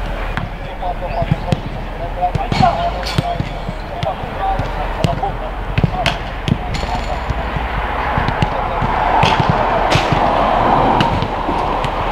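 Footballs being kicked and passed on artificial turf: sharp thuds at irregular intervals throughout, with distant voices of players calling.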